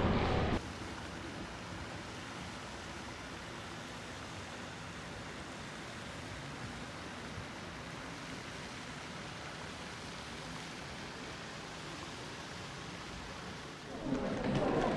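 A steady, even hiss with no distinct events, starting abruptly about half a second in.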